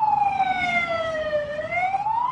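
A siren wailing, its pitch sliding slowly down and then turning to rise again about three-quarters of the way through.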